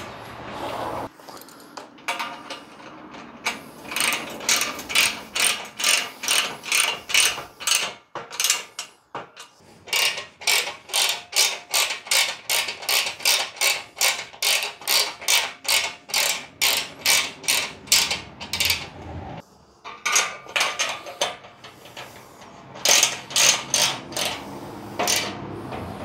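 Hand ratchet clicking in quick back-and-forth strokes, about two to three a second, as bolts on the mount's brackets are tightened; the clicking stops briefly about three-quarters of the way through, then resumes.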